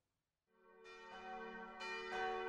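Church bells ringing, fading in from silence about halfway through, with several overlapping strikes that keep sounding.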